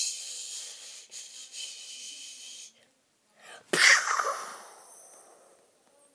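A child imitating a roller-coaster ride with his mouth: a long breathy hiss for about two and a half seconds, then, after a short pause, a sudden loud blown-out burst that fades away.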